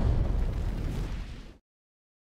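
Film sound effect of a fiery explosion: a deep, rumbling blast that dies away, then cuts off to silence about a second and a half in.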